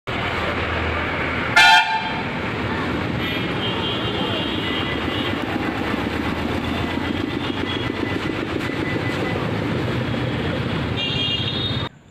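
Steady street traffic noise from passing motorbikes and cars, with a loud short vehicle horn blast about a second and a half in. Fainter horn toots sound a few seconds in and again just before the end.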